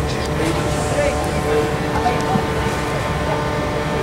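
Steady low rumbling din of a large indoor snow hall, with indistinct voices in the background.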